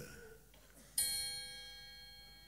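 A single bell-like chime struck once about a second in, ringing with several clear tones and slowly fading.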